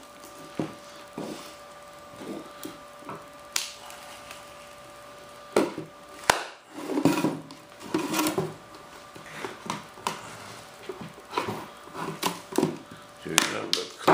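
Modelling clay being picked and scraped by hand off the edges of a wooden mold box, with scattered small clicks and knocks as the mold is handled, over a faint steady hum.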